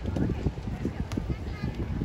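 Wind buffeting the microphone in irregular low thumps, with voices of players and onlookers in the background and one sharper tap about a second in.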